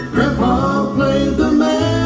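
Bluegrass band playing live: acoustic guitar, mandolin, banjo and electric bass carry the song through a gap between sung lines.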